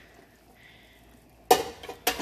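Faint bubbling of a pan of broth at a boil. About three-quarters of the way in comes a sharp clatter of kitchenware against the pan, followed by a few lighter knocks.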